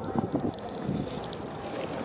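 Wind rumbling on the camera microphone, with a few knocks in the first half second.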